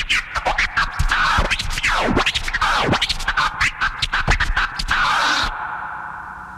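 Turntable scratching: a vinyl record worked back and forth under the needle in quick choppy strokes and long sweeping pitch glides over a beat. About five and a half seconds in the scratching stops and a held tone fades.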